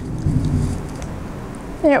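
Low rolling rumble of distant thunder, strongest in the first second and fading away.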